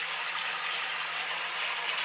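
Bathroom sink tap running, a steady rush of water into the basin.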